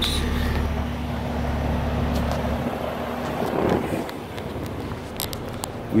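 Outdoor heat pump unit running in cooling mode, a steady low hum that drops away sharply about two and a half seconds in.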